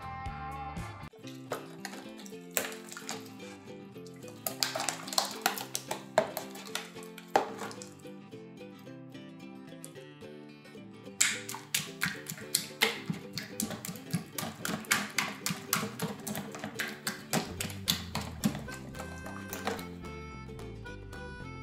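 Background music, with irregular wet clicks and squelches from hands squeezing and kneading runny slime in a plastic tub.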